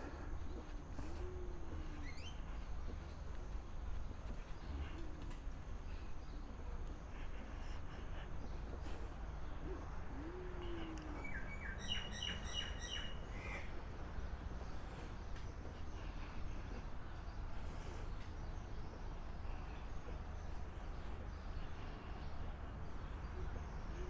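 Birds calling in the trees over a steady low outdoor rumble. A low, soft call that rises and falls is heard a few times, about 1, 5 and 10 seconds in. Around 12 seconds in, a brief run of higher, sharper chirping notes follows.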